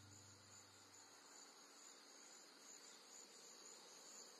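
Near silence between two songs: the last low notes of a song fade out over the first second or so, leaving only a faint, high, steady hiss.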